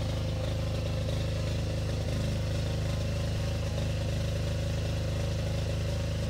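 ITC 7800 AVR diesel generator running steadily, an even low engine hum with no change in speed.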